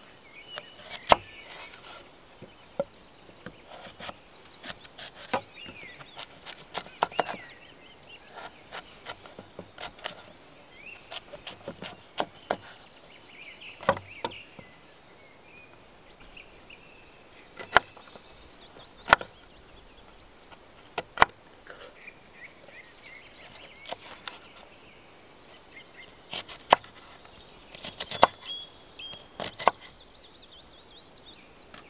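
Knife cutting an onion on a wooden cutting board: irregular sharp taps of the blade striking the board, some much louder than others.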